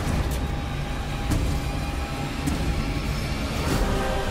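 Film trailer soundtrack: a loud, deep rumble of sound effects and score with a few sharp hits, settling into sustained music near the end.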